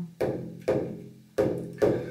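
Hand frame drum struck four times at an unhurried, uneven pace, each stroke ringing out and fading before the next.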